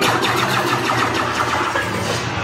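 Loud mechanical rumble from the dark ride's sound effects, starting abruptly as the music gives way, with falling whistling sweeps in the first moment.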